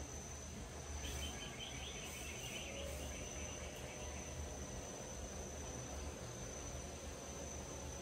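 Insects trilling in one steady high-pitched note, with a second, pulsing chirp that joins about a second in and fades a couple of seconds later, over a low background rumble.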